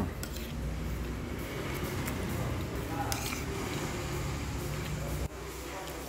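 Steady low background hum of a small eatery with faint voices in the background. The hum drops off suddenly a little past five seconds.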